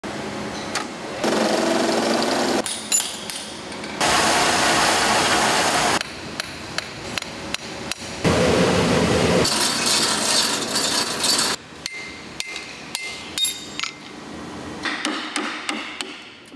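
Workshop sounds from chisel making, cut together in quick succession: stretches of steady machine noise from metal turning and grinding alternate with runs of sharp hammer knocks and clicks on steel. Near the end a few short high-pitched rings sound among the knocks.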